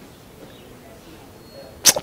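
A short pause in a man's speech with only faint room hiss, then a sharp click near the end as his voice starts again.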